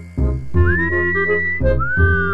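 A two-part wolf whistle, the first note swooping up and holding, the second rising and then sliding down, over playful background music with a steady beat.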